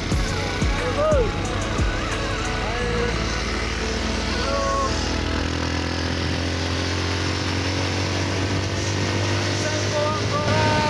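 A motorcycle running steadily on the road, mixed with background music with a singing voice.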